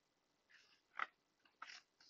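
Faint paper sounds of a picture-book page being turned by hand: a soft rustle, a short sharp tap about a second in, and a fainter tap just after.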